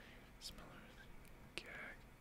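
Near silence with faint whispering: a man muttering to himself under his breath.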